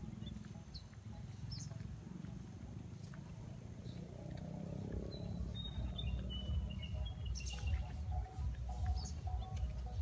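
Small birds chirping and whistling in short, scattered calls over a low, uneven rumble that gets louder about halfway through.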